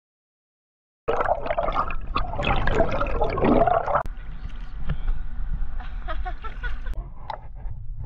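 After about a second of silence, water splashing and gurgling right at the microphone, loudest for the first few seconds and then lower with a few clicks.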